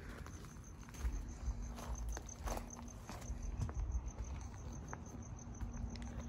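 Cricket chirping at an even rate of several high chirps a second, over a steady low hum and a few faint scuffs.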